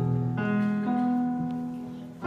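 Piano accompaniment playing slow sustained chords. A new chord sounds about half a second in and the bass moves again about a second in, each fading as it rings.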